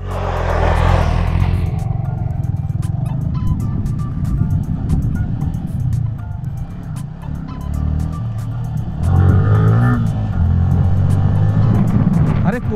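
Yamaha R15 V3's single-cylinder engine running steadily as the bike rides a rough dirt road, with a gust of wind on the microphone in the first two seconds and many small clicks and knocks from the bumpy surface.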